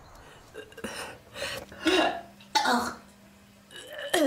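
A woman retching and gagging in a series of short, harsh heaves, trying to make herself vomit.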